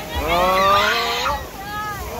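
A rider's voice in a long exclamation that rises in pitch, then a shorter call near the end, over the rush of water on a river rapids raft ride.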